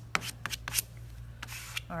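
Short scratchy strokes of an applicator rubbing chalk paste across a mesh stencil, a handful of quick passes over a steady low hum.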